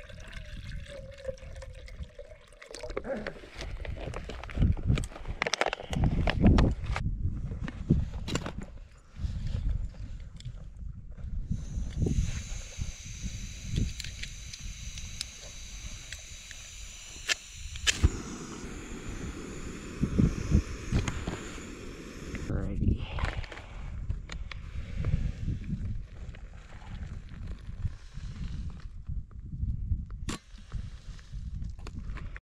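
Water pours with a gurgle from a soft plastic water bladder into a metal pot over the first few seconds, its pitch shifting as the pot fills. Knocks and clatter of cooking gear being handled follow. From about twelve seconds in, a backpacking canister gas stove hisses steadily for about ten seconds, and more handling knocks and rustling come after it.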